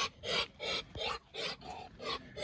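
Rhythmic breathy huffing from an animal, short hissy puffs repeating about three times a second.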